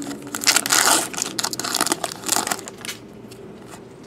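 Foil wrapper of a trading-card pack crinkling and crumpling as it is handled and opened, a run of crackly bursts for the first two and a half seconds or so, then quieter.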